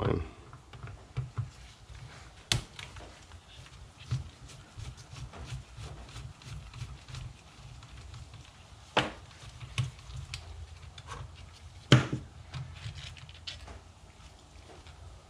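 Scattered clicks and light knocks of a screwdriver and small plastic and metal parts as the carburetor of an Echo CS-360T chainsaw is worked loose, with sharper clicks about two and a half, nine and twelve seconds in.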